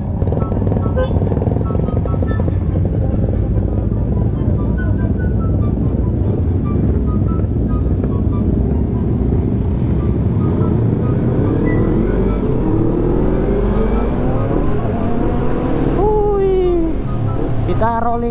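Motorcycle engines running as a group of sport bikes rides off, with several engine notes rising as the bikes accelerate in the second half. Background music plays underneath.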